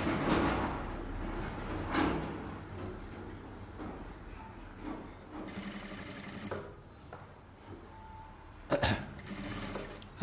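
Industrial lockstitch sewing machine stitching a pleated gold zari border onto blouse fabric, running in short stretches, loudest in the first couple of seconds. A sharp knock comes about nine seconds in.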